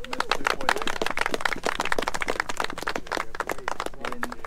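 A small group clapping, a dense patter of hand claps that starts suddenly and thins out near the end.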